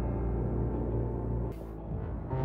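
Ambient background music: low, sustained tones held steady, breaking off about one and a half seconds in.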